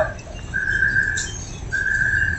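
A steady, high whistle-like tone sounding twice, each time for well under a second, with no rise or fall in pitch.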